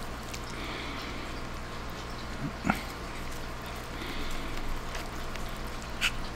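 A man slurping and chewing spaghetti: two hissing slurps with a single sharp click between them, over a steady low hum.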